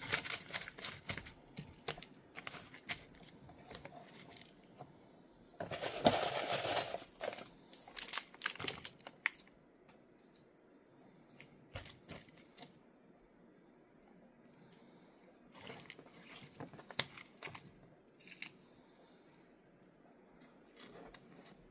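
Hands pressing moss and potting media in around orchid roots in a thin clear plastic pot. The plastic and the packing material rustle and crinkle on and off, with scattered light clicks and a louder rustle about six seconds in.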